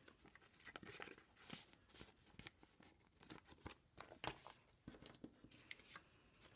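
Faint, scattered crinkles and scrapes of a clear plastic pocket-page protector and photo cards being handled.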